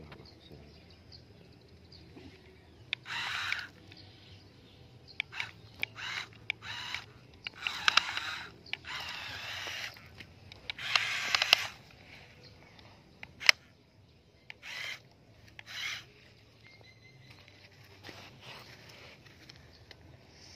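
Toy radio-controlled dump truck driven in short stop-start bursts over sand: its small electric motor and gears whir in about a dozen brief runs, with a sharp click about two-thirds of the way through.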